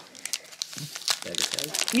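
Foil wrapper of a 1992 Donruss baseball card pack crinkling and crackling in a quick, irregular run as gloved hands grip it to open it. A man's voice comes in near the end.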